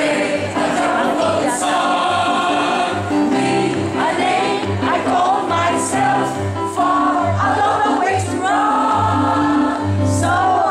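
A mixed choir of men's and women's voices singing, with long held notes that change from phrase to phrase over a low, repeating line of notes.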